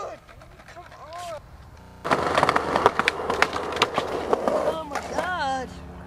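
Skateboard rolling on a concrete path, with a run of sharp clacks and knocks from the board starting suddenly about two seconds in. Near the end a person lets out a short, wavering yell as the skater falls.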